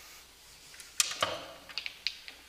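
A sharp knock about halfway through, a second one just after, then a few lighter clicks and taps: handling noise picked up close to a microphone.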